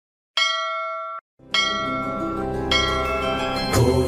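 A bell struck three times, each stroke ringing on with a cluster of high tones. The first stroke is cut off after about a second, a low drone enters under the second, and music thickens near the end.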